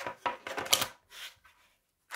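Hard flat diamond painting feather pendants clicking and tapping against each other and the tabletop as they are unpacked, with plastic packaging rustling: a quick run of short clicks in the first second, then one brief rustle.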